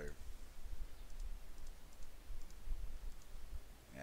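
A computer mouse clicking several times, faintly, between about one and three seconds in, over a low steady hum.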